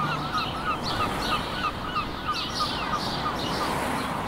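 Many short bird chirps repeating rapidly, several a second, over a steady hiss of background noise.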